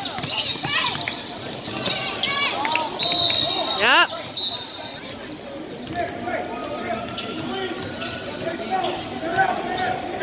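Sneakers squeaking on a hardwood gym floor and a basketball bouncing, with a short, high referee's whistle a little after three seconds in.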